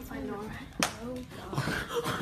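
Young people's voices in a small room, with one sharp smack a little under a second in as a kid tumbling on the carpeted floor lands, and a few lighter knocks near the end.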